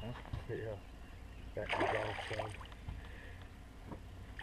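Indistinct men's voices, short and mumbled, with a louder stretch around the middle, over a steady low rumble.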